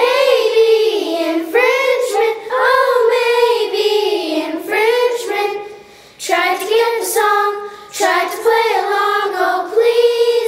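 Children singing a song, in long held phrases that break off briefly about six seconds in and again near eight seconds.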